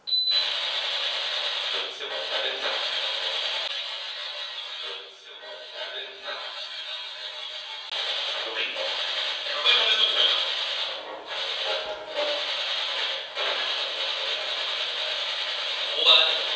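Loud crackling static hiss that starts abruptly, swelling and dipping throughout with scratchy ticks.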